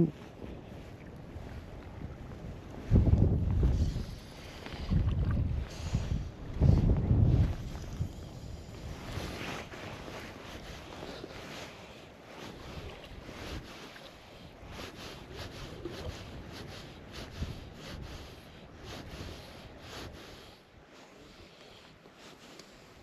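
Wind gusting over the microphone in three loud low rumbles a few seconds in, then easing to a steady rush. Under it, small wind-driven waves lap and splash with faint ticks.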